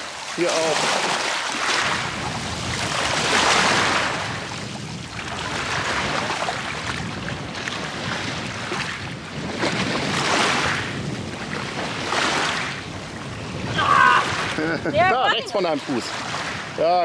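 Small Baltic waves washing in over a pebble shore, the wash swelling and fading every two to three seconds. A voice speaks briefly near the end.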